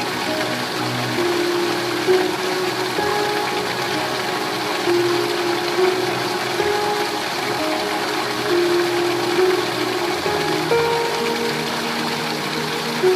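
Soft music of slow, held notes over the steady hiss of heavy rain.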